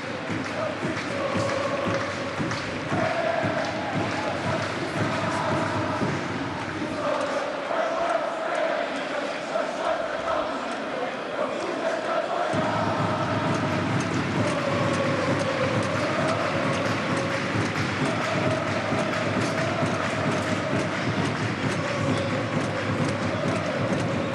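Football stadium crowd singing a chant: a steady wall of many voices, with a sung line that rises and falls.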